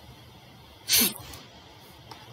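A single short, loud burst of breath from a man close to the microphone, about a second in, over faint steady hiss.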